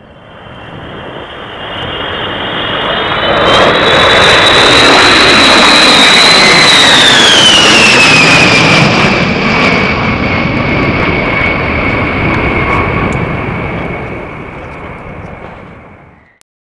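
A B-52 bomber's eight jet engines as it flies past: the noise swells over the first few seconds, a high whine drops in pitch about seven seconds in as the plane passes, and the sound fades away near the end.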